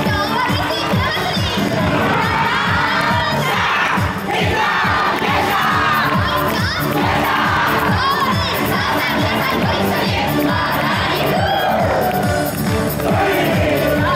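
A large group of yosakoi dancers shouting calls together in waves over dance music with a steady drum beat, with a short break in the shouting about four seconds in.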